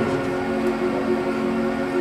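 Background music: a chord of steady held notes with no words over it.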